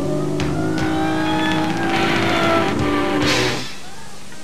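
Live rock band playing: electric guitar with rising, bending notes over drums and cymbal crashes, the band stopping suddenly near the end after a last crash.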